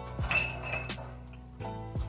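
Glass swing-top bottle clinking with a short ring as it is set down into a metal wire basket, about a third of a second in, over background music with a beat.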